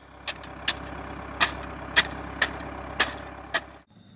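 A hand tool tamping gravel around a fence post, about seven sharp strikes roughly half a second apart, over a wheel loader's engine idling close by. Both stop suddenly near the end.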